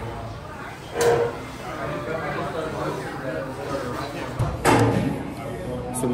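Busy restaurant din: many diners' voices overlapping, with no single speaker standing out. Two louder sudden bursts break through, about a second in and again near five seconds.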